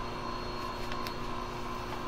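Steady mechanical hum of basement heating equipment running, with a faint click or two about a second in.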